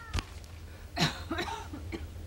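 A person coughing once, about a second in, over a steady low hum.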